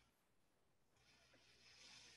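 Near silence: faint room tone on a video-call microphone, with a faint hiss rising in the second half.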